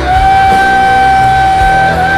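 Rock band playing live at loud volume: electric guitars, bass and drums, with one high note held steady over the top.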